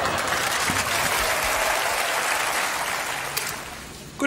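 Audience applauding between comedy sketches, a dense even clatter of clapping that dies away near the end.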